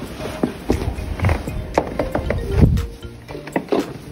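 Background music, with scattered short crackles and a few low thumps, the loudest about two and a half seconds in.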